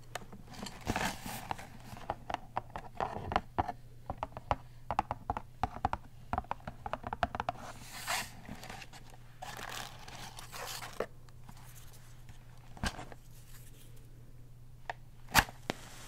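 Cardboard box of long wooden matches being handled and slid open, with close-up rustling and many small clicks, thinning out later. Near the end a single sharp scrape as a long match is struck and flares.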